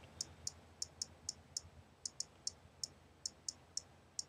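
iPod Touch on-screen keyboard clicks as a note is typed: faint, short high ticks, one per keystroke, about a dozen at an uneven typing pace.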